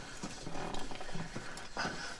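Low, guttural growling, like a snarl, over a steady background hiss.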